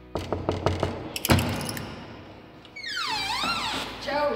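Knuckles rapping on a wooden panelled door: a quick run of knocks, then a louder knock a little over a second in. Near the end comes a high, wavering squeal that slides down and back up in pitch.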